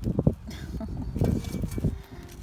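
A woman laughing briefly in a few short, breathy bursts near the start, over a low rumbling background.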